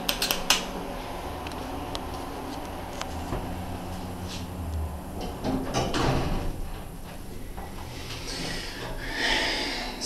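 A few sharp clicks from a car button being pressed, then the sliding doors of a Dover hydraulic elevator running shut about five and a half seconds in, over a low steady hum. A hiss builds near the end as the car gets under way.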